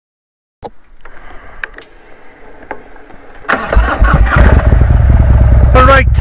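A few faint clicks, then a Harley-Davidson V-twin motorcycle engine starting about three and a half seconds in and running with a strong low pulse. It is heard through a helmet-mounted mic.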